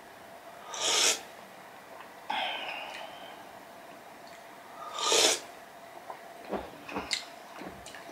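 Ramen broth slurped from a spoon, twice, about four seconds apart, with a softer breath between the sips and a few faint clicks near the end.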